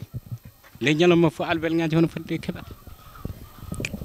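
A man's voice held on one steady pitch for about a second, with broiler chickens in the coop faintly heard in the quieter second half.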